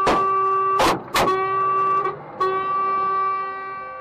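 A truck's horn held in a long blast, breaking briefly about two seconds in, then sounding again and fading. Three loud sharp bangs land in the first second or so: stones thrown by the mob striking the truck.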